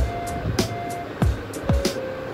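Background music with a steady beat: a deep drum thump roughly twice a second over held synth notes.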